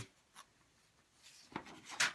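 Near silence: room tone, with a faint click about half a second in and soft rustling and small clicks near the end.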